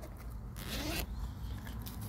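Zipper of a High Sierra duffel bag being pulled open: one quick zip lasting about half a second, starting about half a second in.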